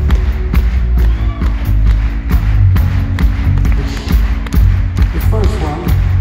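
Rock band playing live at full volume: a steady drum beat over heavy bass, with held keyboard chords. The lead vocal comes back in near the end.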